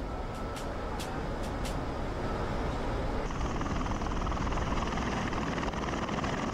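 Bell Boeing V-22 Osprey tiltrotor, its twin turboshaft engines and proprotors giving a steady, dense rush of rotor and engine noise. About halfway through the sound turns brighter and hissier, with a fast pulsing beat.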